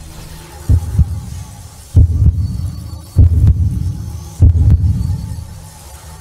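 Intro sound effect of deep double bass thumps like a heartbeat, four beats about a second and a quarter apart, over a low steady hum.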